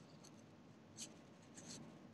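Near silence: room tone over a video call, with a few faint short clicks about a second apart.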